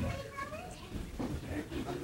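A man's voice making wordless vocal sounds with gliding pitch.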